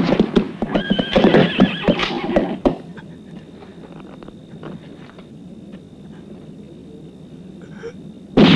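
A horse whinnying over a clatter of hooves, dying away about two and a half seconds in. After that it is much quieter, with only faint scattered taps.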